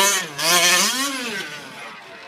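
Two-stroke engine of a 1/5-scale gas RC short course truck revving up and down as it drives, one rise in pitch about a second in, then falling away and getting quieter towards the end.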